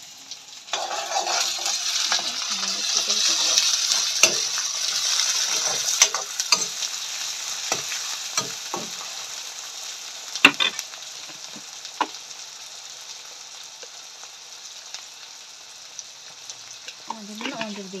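Chopped onions and tomatoes sizzling in hot oil in a metal kadai (wok) on a gas burner, stirred, with several sharp metal knocks and scrapes. The sizzle starts abruptly about a second in and slowly dies down.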